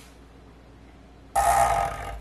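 Quiet room tone with a low hum, then about a second and a half in a sudden, short, loud throaty vocal sound from a person, lasting about half a second.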